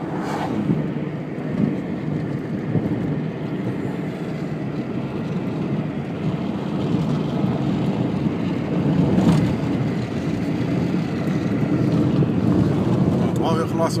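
Steady rumble of a moving car heard from inside the cabin: engine and tyres on the road at cruising speed.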